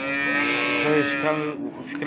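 A cow mooing: one long, level call lasting about a second and a half.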